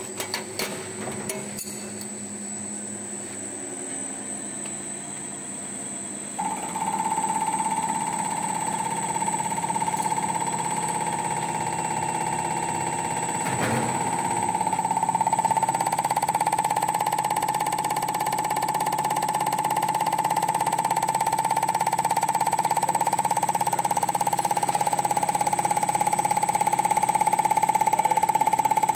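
CR777 common rail test bench running an injector test, building rail pressure: a steady high whine sets in about six seconds in and the sound grows slowly louder. A few clicks near the start and one sharp knock about fourteen seconds in.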